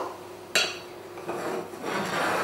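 A spatula scraping chocolate chips off a plate into a stainless steel mixing bowl. A sudden clatter comes about half a second in, followed by rubbing and scraping of the spatula against the plate.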